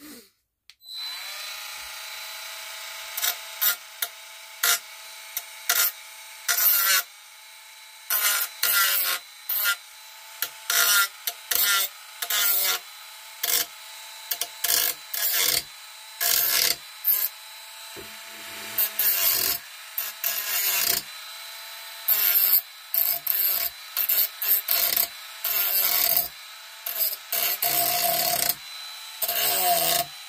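Dremel rotary tool with a cutting wheel starting up about a second in and running with a steady whine, broken by many short rasping bursts as the wheel bites into the edge of an old radio cabinet, scoring grooves along a crack.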